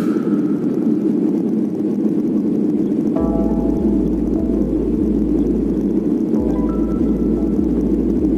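Background electronic music: a steady low drone, joined about three seconds in by a bass line and a few short synth notes.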